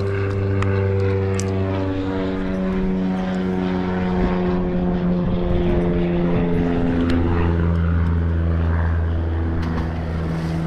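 A propeller aircraft engine running steadily, its pitch shifting slowly.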